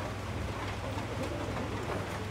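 Steady background noise of an open-air courtyard: a constant low hum under a faint even hiss, with no distinct event.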